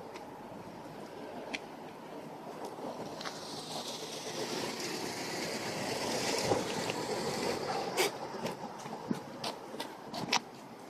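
A passing vehicle's steady rush, swelling to a peak about six to seven seconds in and then easing off, with a few faint clicks over it.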